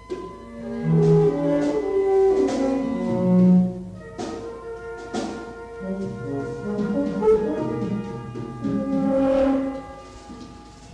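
Twelve-tone chamber music for flute, English horn, horn and cello with percussion: overlapping held notes and short moving lines in the low and middle register, with a few sharp percussion strikes that ring on, two of them about four and five seconds in.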